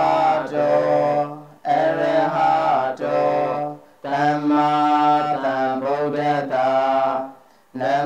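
Buddhist devotional chanting by a single voice, sung in three long phrases of held, drawn-out notes with brief breaths between them.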